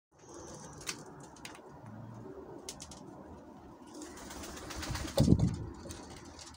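Domestic pigeons in a loft, faint low cooing with a few light clicks. Near the end comes a louder, low pulsing rumble.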